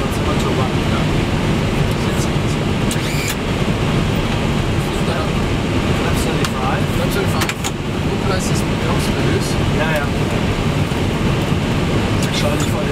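Steady loud rush of air and engine noise on the flight deck of an MD-11F freighter on approach, with faint voices at times.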